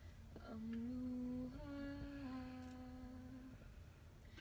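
A voice humming a slow melody in a few long held notes, with no backing music.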